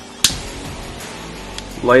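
Butane finger torch lit with one sharp piezo-ignition click about a quarter second in, followed by the faint steady hiss of its jet flame.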